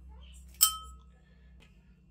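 A metal pot struck once while olives are being pitted by hand over it: a single sharp clink about half a second in, with a short ring that fades quickly.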